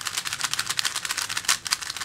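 An unlubricated Gans 356 3x3 speedcube being turned fast by hand: a rapid, continuous run of plastic clicks and clacks as the layers snap round.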